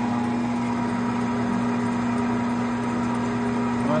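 Bulgarian metal lathe running under power during a single-point threading pass, its motor and gear train giving a steady, even hum.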